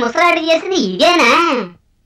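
A high-pitched, child-like voice chanting in a sing-song way, stopping shortly before the end.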